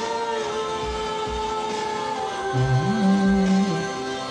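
A man singing a slow song with piano, holding one long note and then a lower one. Deeper notes come in and the sound swells past the halfway point.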